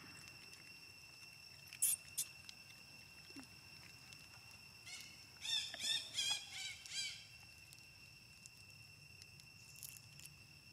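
Baby macaque giving a quick run of about six high, squeaky rising-and-falling calls lasting about two seconds midway through, over a steady high-pitched insect drone. Two sharp clicks come about two seconds in.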